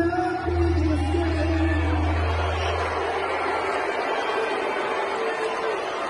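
A man singing live to his own acoustic guitar in a large arena, holding one long note through the first couple of seconds, with crowd noise behind.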